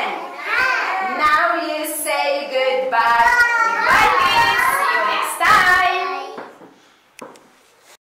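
A group of young children singing together. The singing ends about six seconds in and it goes quiet, apart from a faint tap.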